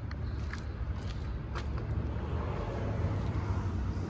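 Ford F550's 6.7-litre Power Stroke diesel idling: a steady low rumble, with a few faint ticks over it.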